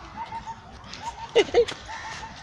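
Faint short chirps repeating in small groups, typical of a small bird, with two short loud cries close together about one and a half seconds in.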